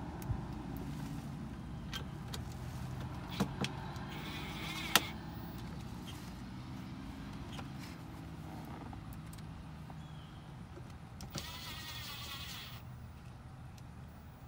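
Cordless driver whirring in two short runs as it drives Phillips screws into a dashboard cup holder, the second run lasting about a second. A few sharp clicks, the loudest about five seconds in, and a steady low hum run underneath.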